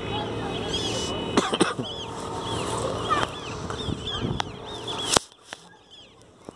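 Birds chirping in many short, repeated arched calls over a steady outdoor background din, with a few sharp clicks. About five seconds in, the background noise cuts off suddenly after a loud click.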